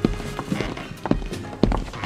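Footsteps walking at about two steps a second, over background music.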